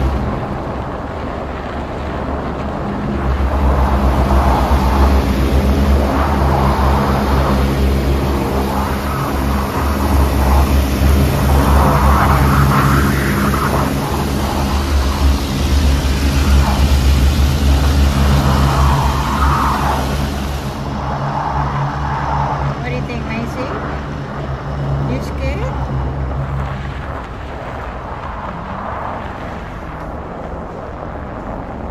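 Automatic car wash machinery working on the car, heard from inside the cabin: a steady low machinery hum under a loud rushing hiss that cuts off suddenly about two-thirds of the way through.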